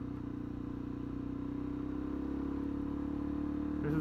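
Suzuki DRZ400SM supermoto's single-cylinder four-stroke engine running steadily as the bike is ridden, its note rising slightly and getting a little louder in the second half as the bike speeds up.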